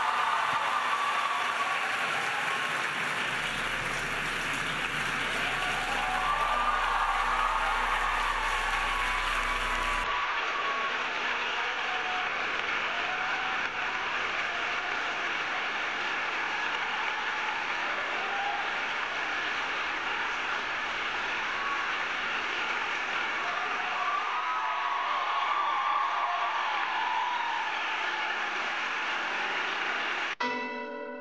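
A large audience applauding steadily and at length.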